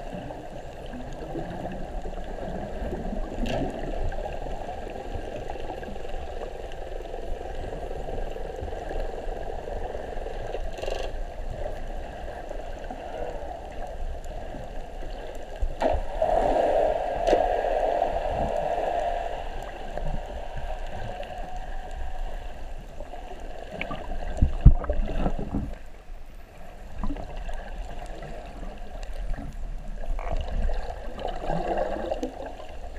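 Underwater sound picked up by a camera in its waterproof housing: a steady, muffled rush of moving water with gurgling. It swells into a louder bubbling patch about sixteen seconds in, and a few sharp knocks come about twenty-five seconds in.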